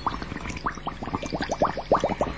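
A rapid run of short liquid gurgling blips, each dropping in pitch, coming faster as it goes on.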